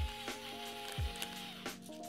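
Background music: sustained held notes over a soft kick-drum beat, two beats about a second apart.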